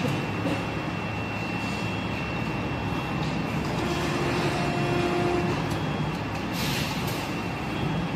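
Plastic injection moulding machine running with its mould clamped shut: a steady hydraulic hum with a thin high whine over it, and a brief hiss about two thirds of the way through, just before the mould halves start to open.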